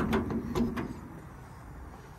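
Steel service-body compartment door being latched by its chrome paddle handle: a few metallic clicks and clunks within the first second.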